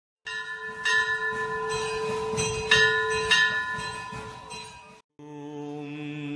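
A bell struck about four times, its ringing tones overlapping and dying away about five seconds in.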